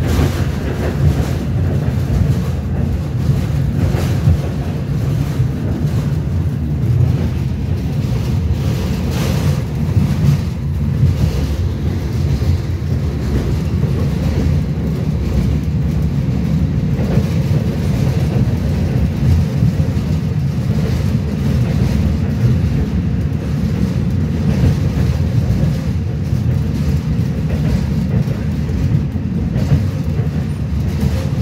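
Interior ride noise of a moving BKM 802E Belkommunmash electric transit vehicle: a steady low rumble from the running gear and road, with scattered brief rattles and clatters.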